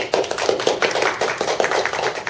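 A small audience applauding: a dense, steady patter of many hands clapping.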